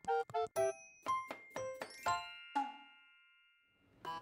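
Short cheerful intro jingle of quick chiming, bell-like notes, ending on a held chime about two seconds in that rings out and fades away.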